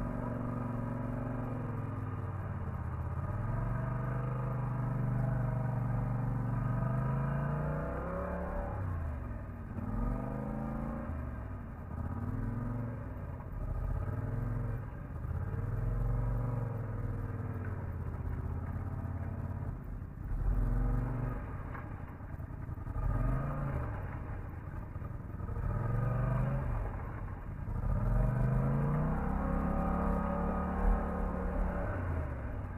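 Polaris ATV engine driving through floodwater and ice. The throttle is opened and eased over and over, so the engine note rises and falls every second or two.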